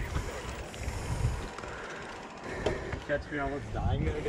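Mountain bike riding noise: tyres rolling over dirt and rock with the bike rattling, heard as a steady rumble with small knocks. A rider's voice calls out briefly near the end.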